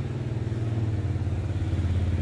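A small engine idling steadily: a low, even hum with a fast regular pulse.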